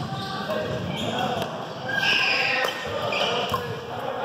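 Badminton rally on a hardwood gym court: several sharp racket hits on the shuttlecock and short, high squeaks of sneakers on the floor, echoing in a large hall.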